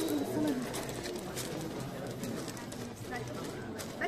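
A pigeon cooing over the murmur of a crowd's voices, with scattered small clicks.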